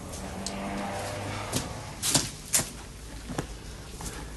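A horse's hooves knocking about four times on a brick stable-yard floor as it shifts and steps, over a low steady hum.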